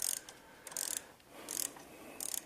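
Ratchet wrench with a socket backing out a 10 mm bolt on the phase terminals of a Tesla drive unit inverter: three short bursts of pawl clicking, one on each return stroke, less than a second apart.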